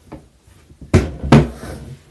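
Two sharp knocks about half a second apart, with handling noise between and after them, like objects being put down on a hard surface.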